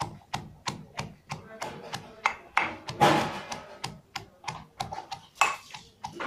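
Boiled chana dal being pounded coarsely in a stainless steel bowl with a hand-held pounder: quick, even knocks on the metal, about three a second, with a louder, rougher stretch of crushing about three seconds in.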